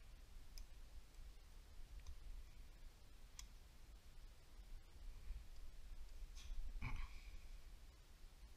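Faint small metal clicks from KO3 turbocharger parts being handled and pressed together on the compressor backplate, with a stronger click and short clunk just before the end, the part pushed in until it clicks into place.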